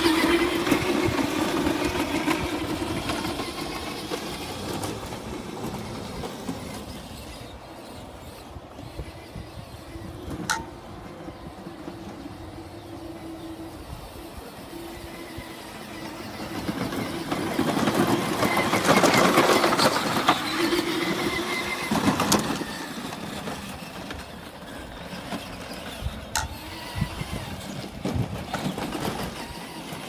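Power Wheels ride-on Jeep's two stock brushed electric motors and gearboxes whining as it is driven by radio control over a lawn. They run on a 4S pack of up to 16.8 volts instead of the stock 12. The whine is loudest at first, fades as the Jeep drives off, and swells again about two-thirds of the way through, with a couple of sharp clicks.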